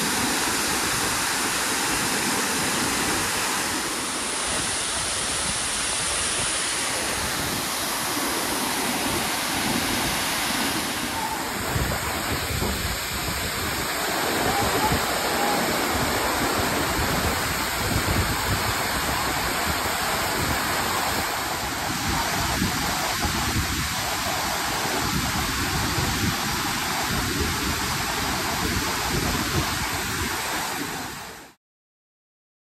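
Waterfall pouring over rock ledges into a plunge pool: a steady, even rush of falling water. Its tone shifts slightly about eleven seconds in and again a little past twenty seconds.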